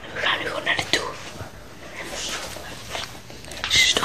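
Boys whispering close to the microphone.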